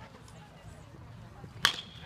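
A bat hitting a pitched ball once, a sharp crack about a second and a half in, followed by a brief high ringing ping typical of an aluminium bat.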